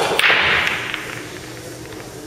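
Pool break shot: the cue tip clicks against the cue ball, then a loud crack as it hits the racked balls, followed by a clatter of balls knocking together that dies away within about a second.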